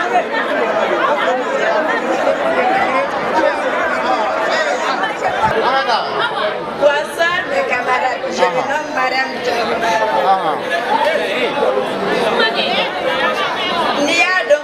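Crowd of young people chattering, many voices overlapping in a steady babble.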